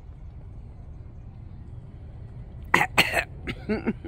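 A woman coughs twice in quick succession, close to the microphone, about three seconds in, followed by a short voiced throat sound. Before that there is only a low, steady outdoor background.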